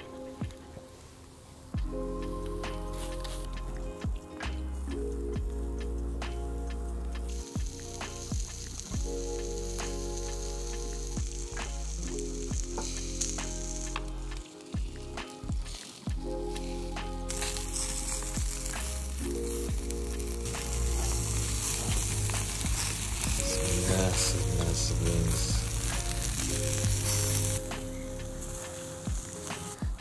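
Turkey yakitori skewers sizzling on a grill, with a hiss that swells from a little past halfway to near the end, under background music with a steady bass line.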